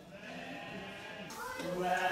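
A goat bleating: one long call that begins about one and a half seconds in and is the loudest sound here.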